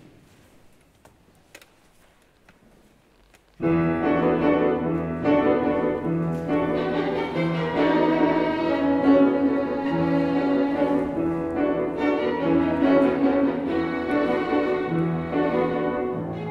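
Violin and piano start playing together suddenly about three and a half seconds in. Before that, the room is quiet apart from a few faint clicks.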